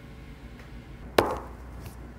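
A single sharp knock with a short clattering tail about a second in: a plastic four-sided die landing on the tabletop.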